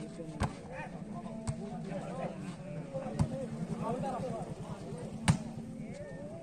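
A volleyball being struck during a rally: four sharp smacks spread out over several seconds, the last one, near the end, the loudest. Faint shouting voices and a steady low hum run underneath.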